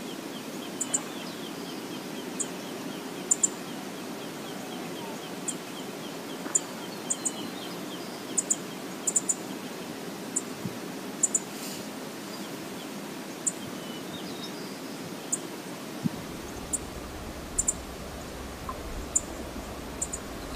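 Steady rush of river water with short, high bird chirps, often in pairs, every second or so. A low rumble joins about three-quarters of the way through.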